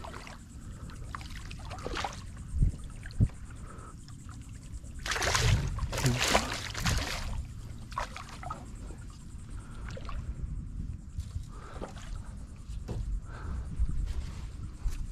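Water sloshing and splashing against the hull of a small skiff, with a steady low rumble. There are two sharp knocks on the boat about two and a half and three seconds in, and a louder stretch of splashing from about five to seven seconds in.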